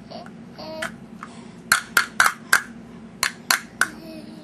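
Plastic stacking cups knocked together in a baby's hands: seven sharp clacks, in a quick run of four a little under two seconds in, then three more about a second later.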